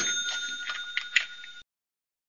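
A bell-like ringing sound effect fading away, with a few faint ticks through it, cutting off suddenly about one and a half seconds in.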